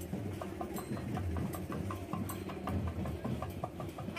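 Procession band drums playing a fast, steady rhythm of sharp knocks, about four to five beats a second, over a low rumble.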